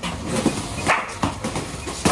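A dog barking briefly, over quad roller-skate wheels rolling and knocking on a concrete floor, with a few sharp clacks, the loudest about one second in.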